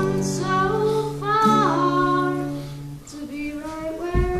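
A boy singing in a high, unbroken voice while strumming an acoustic guitar, with long held notes over steady chords.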